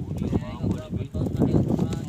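Men talking in an untranscribed local language, several short phrases with brief gaps between them.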